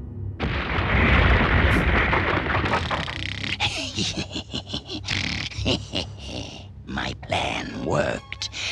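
Cartoon sound effect of a robot sand crab bursting up out of the sand: a sudden loud rumbling rush about half a second in, fading over a few seconds. It is followed by sharp mechanical clanks mixed with a gruff wordless voice.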